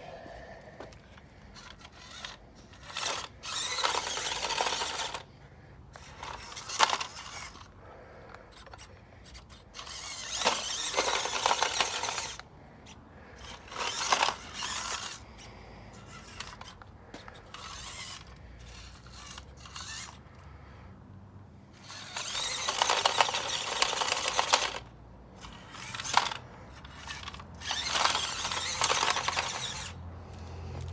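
Electric motor and gears of a small RC rock-crawler pickup whirring in repeated bursts of a few seconds, with tyres scrabbling on concrete as it tries to climb a curb and fails.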